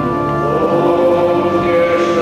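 A group of voices singing a hymn during the offertory of a Mass, in long held notes.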